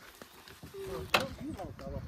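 Quiet, indistinct talking of a few people, with one sharp click a little after a second in.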